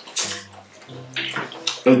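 Wet chewing and lip-smacking mouth sounds of eating, in a few short bursts.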